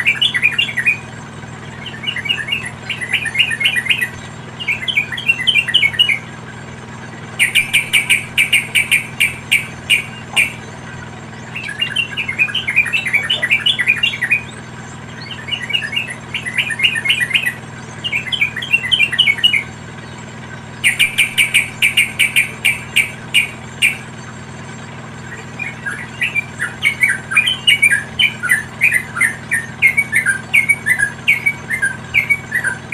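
Yellow-vented bulbuls chattering in repeated bursts of rapid notes, each a second or two long with short pauses between. About seven seconds in, and again about twenty-one seconds in, comes a burst of very fast, sharp clicking notes.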